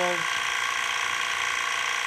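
TRS21 active recovery pump running steadily, an even mechanical whine and hum, as it pulls solvent back out of the extraction column into the tank.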